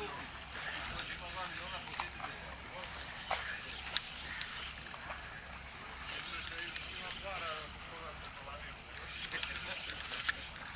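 Faint distant talk over a steady outdoor hiss, with a few scattered light clicks.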